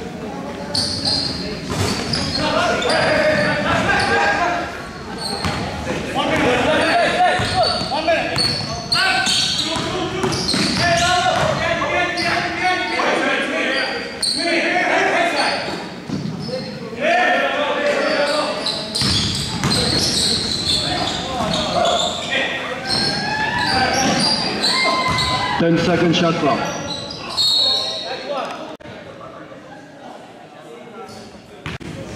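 A basketball bouncing on a hardwood gym court during a game, with players' and onlookers' voices calling out and echoing around the large hall.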